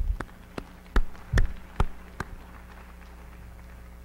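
Hand claps answering a call for a round of applause, heard as a few separate sharp claps about two or three a second with a couple of low thumps on the microphone, stopping about two seconds in. A steady electrical hum runs underneath.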